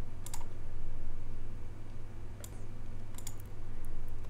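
A handful of sharp computer mouse clicks, spaced irregularly and bunched near the end, over a steady low electrical hum.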